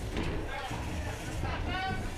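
Steady noisy din of a busy indoor arena with a low rumble, and a brief voice near the end.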